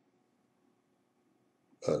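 Near silence, then a man says one short word, "baleh" ("yes"), near the end.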